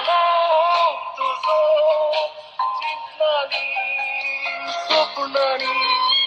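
A song with a singing voice played back through the small built-in speaker of a ByronStatics portable cassette player. It sounds thin and tinny, with little bass.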